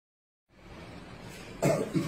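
A man coughs once, a short, loud cough about one and a half seconds in, over faint room noise.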